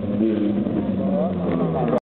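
Ferrari sports car engine running as the car accelerates away, a steady pitched note that rises briefly about a second in and again near the end, over crowd chatter.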